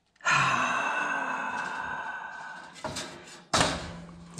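A man's long, voiced sigh that fades away over about two and a half seconds, followed by two short knocks or rustles near the end.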